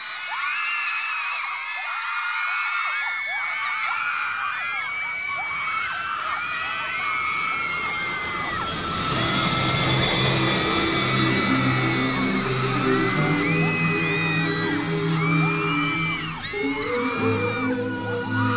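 A crowd of teenage girl fans screaming, many high-pitched screams overlapping. Music comes in underneath about halfway through.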